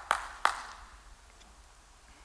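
Two sharp clicks about a third of a second apart, each trailing off in the hall's reverberation, followed by faint room tone.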